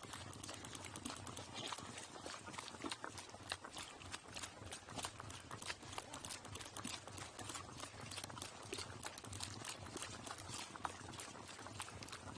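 A pack burro's hooves striking a dirt and gravel road as it travels, heard close up from the pack saddle on its back: a quick, uneven run of clopping steps, several a second.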